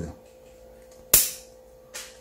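Steel bonsai shears snipping through a thin branch once, a single sharp click about a second in.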